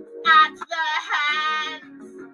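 A solo voice singing over a pop backing track with guitar. It sings a short note, then holds a long note that wavers in pitch.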